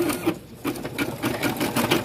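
Computerized embroidery machine stitching a design in a hoop: a sharp stroke at the start, a short lull, then rapid, even needle strokes from about half a second in.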